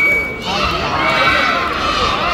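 Many high-pitched voices yelling and cheering at once, overlapping without a break.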